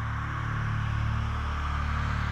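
Background music: a steady, sustained drone of low held tones with no beat.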